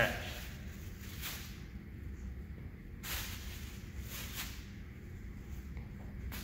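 Plastic shopping bag rustling in several brief crinkles, some in quick pairs, as it is tossed up and caught, over a low room hum.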